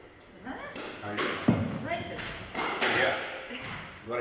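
People talking, with a single heavy thud about one and a half seconds in.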